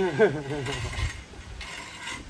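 A man says a word and laughs briefly, followed by low, uneven rumbling noise.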